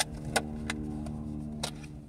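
Small plastic clicks and taps as cheap Bluetooth earbuds and their packaging are handled: four sharp clicks, the first the loudest, over a steady low hum.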